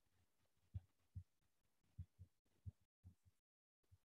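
Near silence with about seven faint, short low thuds at irregular spacing, roughly every half second to a second.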